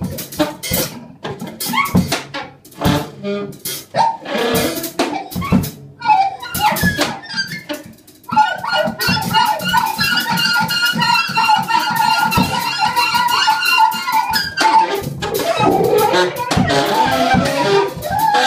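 Free-improvised trio music on daxophone, alto saxophone and drum kit. The drums play loose, irregular hits and rattles for the first half. From about eight seconds a sustained, slightly wavering pitched tone enters and holds for about six seconds over the drums.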